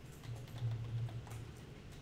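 Computer keyboard typing: a handful of separate keystroke clicks over a couple of seconds, with a low hum underneath.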